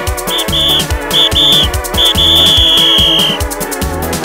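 Live gospel band music with a fast, even drum beat and keyboard organ chords. A high, shrill note sounds in short bursts, then holds for about a second and a half in the middle.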